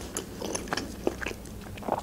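Close-miked chewing of a mouthful of pepperoni pizza, with a few faint mouth clicks.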